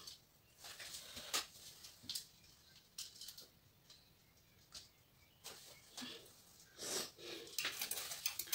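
Faint, scattered clicks and rustles of an LED ring light and its tripod stand being handled and fitted onto the stand's mount.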